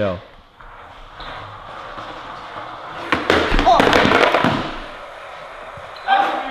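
Skateboard wheels rolling across a hardwood floor, then a clatter of several sharp board impacts about three seconds in as the ollie is attempted, with voices calling out over them.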